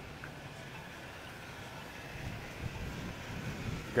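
Gusty wind rumbling on a phone microphone outdoors, swelling a little from about two seconds in.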